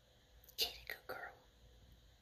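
A few whispered words, short hissy bursts lasting under a second, starting about half a second in.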